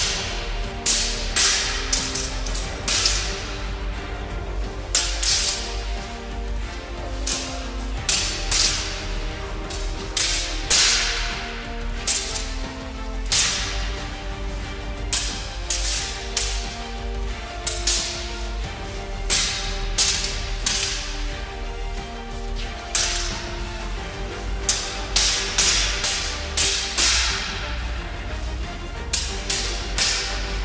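Background music with a steady bass line, with frequent sharp, irregular cracks of steel training longswords clashing in sparring.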